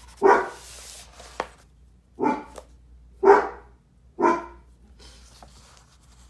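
A dog barking in the house: one bark, a pause, then three more barks about a second apart.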